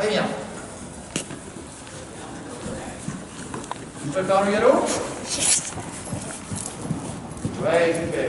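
A horse's hoofbeats on the sand footing of an indoor arena, with a few faint knocks, and a person's voice about four seconds in.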